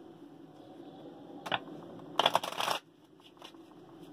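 A tarot deck being shuffled by hand: a short rustle of cards about a second and a half in, then a longer one just after two seconds, followed by a few soft card ticks.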